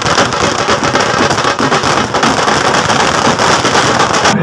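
Firecrackers going off on the ground in a rapid, continuous crackle of many small bangs.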